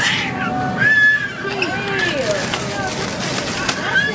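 Young children's high-pitched voices, vocalising and calling out without clear words, with a couple of short held high notes.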